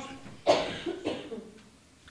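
A cough about half a second in that trails off over about a second, quieter than the preaching around it.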